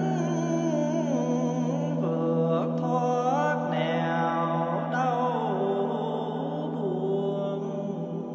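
A Buddhist bell chant sung by a solo voice, slow and melismatic, its pitch gliding between long held notes over a steady low drone.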